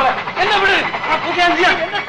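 A person's voice sounding without a break, high-pitched and rising and falling.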